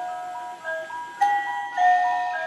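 Animated Santa-in-a-sack toy playing a simple melody in clear electronic tones from its sound chip, with a short click about a second in.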